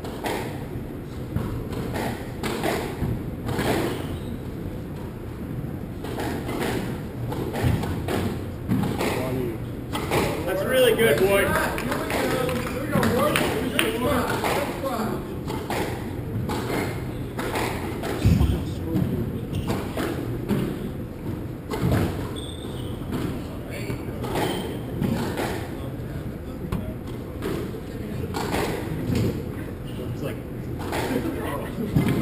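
Squash rally: the ball struck by racquets and knocking off the court walls in a run of sharp hits, about one every second, echoing in the court, with one especially hard hit a little past halfway. Spectators' voices carry on in the background.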